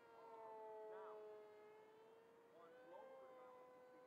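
Faint, steady whine of a small brushless electric motor and 6x4 propeller on an RC plane in flight, its pitch drifting slightly and rising a little about three seconds in as the throttle changes.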